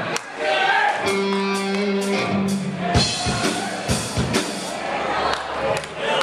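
A band playing with drums and guitar, the song starting about a second in: a held note over regular drum hits, with a heavy hit about three seconds in.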